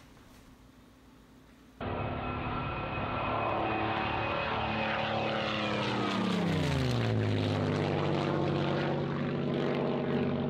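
Near silence for almost two seconds, then an aircraft engine cuts in suddenly, running at a steady pitch. About five seconds in, its note falls steeply, then settles lower and steady.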